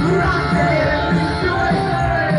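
Live synth-rock band playing: electric guitar, drums and electronics over a steady beat, with a gliding melodic line on top.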